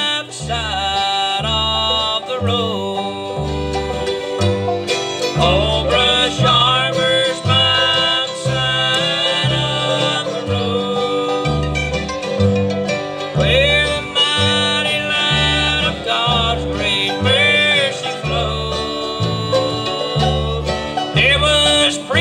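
Bluegrass band playing an instrumental break: banjo, mandolin, fiddle and acoustic guitar over an upright bass keeping a steady, even beat.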